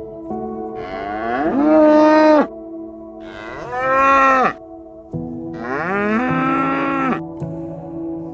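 A cow mooing three times, each long call rising in pitch, holding, then dropping away, over a steady drone of ambient background music.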